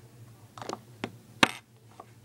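A few light clicks and knocks of small hard objects being handled, the sharpest and loudest about a second and a half in, over a faint steady low hum.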